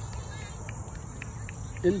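Steady, high-pitched insect chorus, with a few short chirps in the middle.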